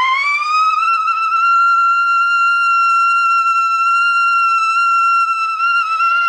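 Trumpet gliding up into a very high note and holding it steadily, played with an upstream embouchure.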